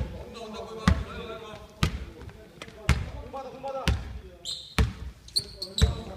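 A basketball being dribbled on a wooden gym floor, a steady bounce about once a second, seven bounces in all, echoing in a large hall. Voices in the background and a few short high squeaks near the end.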